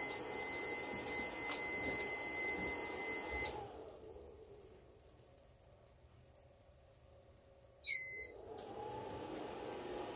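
A 4000 W modified sine wave power inverter sounding a steady high-pitched alarm tone over the hum of cooling fans, overloaded by the inrush current of an inverter stick welder. About three and a half seconds in the tone cuts off and the fans wind down as the inverter shuts off. Near the end a short beep sounds and the fans spin back up as it powers on again.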